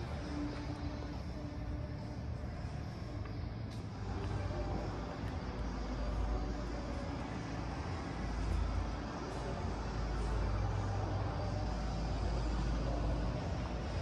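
Steady background rumble and hiss in a large hall, heaviest in the low end and rising a little about four seconds in.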